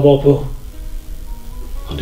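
A man's voice speaks for a moment at the start, then soft background music of held, steady notes.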